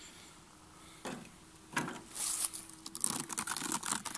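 Opening a small wooden hive by hand: wooden slats knock and the clear plastic foil over the frames crinkles as it is lifted back, with a run of light clicks and rustles near the end. A faint steady hum runs through the middle.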